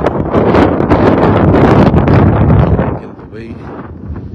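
Wind buffeting a phone microphone outdoors: a loud, rough rumble that eases off suddenly about three seconds in.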